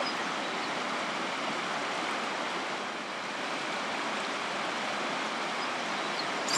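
Whitewater river rapids rushing, a steady, unbroken wash of water noise.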